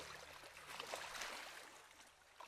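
A river flowing, heard faintly: a steady rush of water with small trickling splashes.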